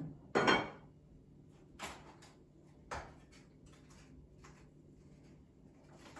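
Kitchenware being handled on a counter: one loud clink about half a second in, then a few lighter knocks and clicks as a baking pan is readied to release a cooled cookie from it.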